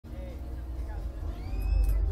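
Low rumble that grows louder about one and a half seconds in, with faint voices in the background.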